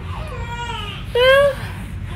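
A young baby fussing: a thin, drawn-out whimper, then a louder, short cry a little after a second in.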